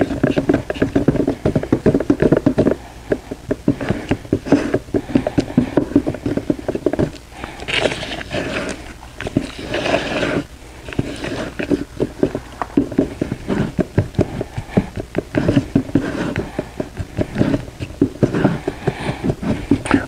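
A wooden paint stick stirring thick pigmented epoxy resin in a plastic mixing cup: fast, uneven scraping and knocking strokes against the cup's plastic wall.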